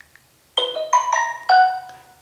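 A short chime of about four bright, marimba-like notes in quick succession, starting about half a second in and fading out near the end, like a phone alert tone.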